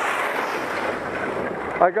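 Steady rush of wind over a helmet camera's microphone while skiing downhill on groomed snow, coming in suddenly; a man's voice starts near the end.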